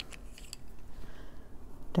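Coloured pencils being handled: a couple of light clicks about half a second apart as one pencil is set down and another picked up, then faint scratching of pencil lead on paper.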